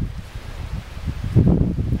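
Wind buffeting the microphone as a low, uneven rumble, with rustling of dry leaves. It grows louder about one and a half seconds in.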